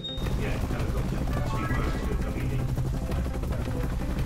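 Helicopter rotor chopping steadily, coming in suddenly, over background music.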